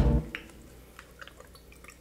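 Faint, scattered small wet sounds of rubber-gloved hands working inside a raw turkey's cavity and pulling out the neck.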